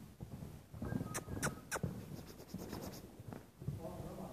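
Young Hanoverian mare cantering loose on an indoor arena's sand, her hoofbeats dull thuds. About a second in come three sharp clicks in quick succession, then a brief dry rattle.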